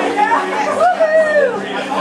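Several people chattering in a bar room, with a steady low hum underneath.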